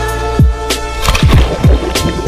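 Background music with a steady beat: deep bass kicks that drop in pitch, sharp clicks and sustained held tones.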